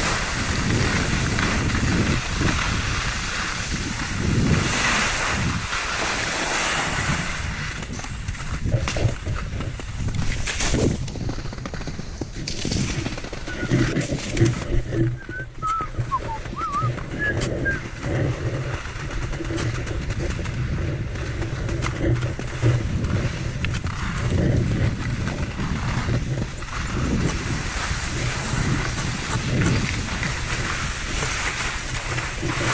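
Wind rushing over the camera microphone and Völkl skis scraping over wet spring snow during a continuous downhill run, the noise rising and falling in level as the skier turns.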